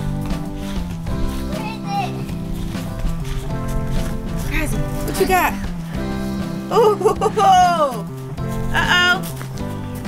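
Background music with steady sustained chords, with children's high voices calling out briefly a few times over it.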